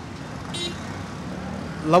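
Street traffic noise, with a short high-pitched beep about half a second in; a man's voice begins just before the end.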